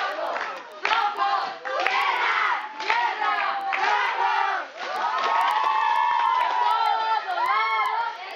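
A crowd of young people shouting and cheering together, many voices overlapping, with a long drawn-out group call in the second half.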